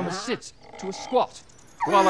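A voice speaking briefly at the start, then falling quiet for about a second before speech resumes near the end.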